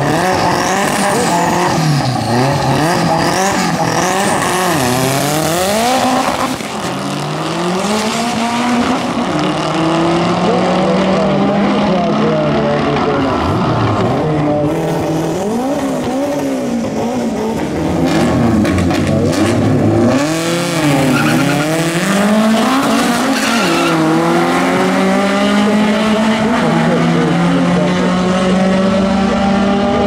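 Drag-race cars' engines revving hard and accelerating down the strip, the pitch repeatedly climbing and dropping through the gears, with tyre squeal from the launch and burnout. It gets louder about two-thirds of the way through as another pair of cars runs.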